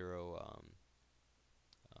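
A man's drawn-out 'um' trailing off into a creaky voice, then a quiet pause broken by a couple of faint computer mouse clicks near the end.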